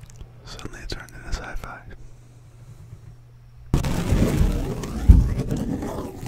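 A sheet of printer paper handled right against a microphone: a few soft crinkles at first, then, a little under four seconds in, a sudden burst of rustling and flapping with deep thumps as the paper brushes the mic, loudest about five seconds in.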